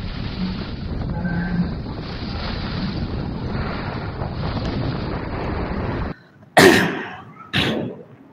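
Steady background hiss that cuts off abruptly about six seconds in, then a person coughing twice, about a second apart, the first cough the loudest sound.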